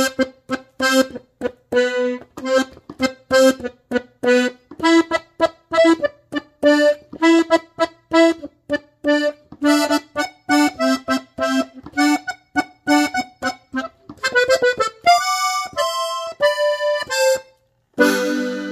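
Pedraza diatonic button accordion in G (Sol) playing a norteño melody in short, detached notes. About fourteen seconds in comes a quick run, then a few longer held notes, and the playing stops just before the end.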